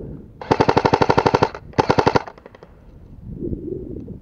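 Airsoft rifle firing on full auto: a rapid burst of about a second, then a shorter burst of about half a second.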